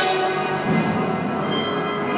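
Ringing bell tones in music: a bell-like note is struck right at the start, and many overtones ring on, held and layered.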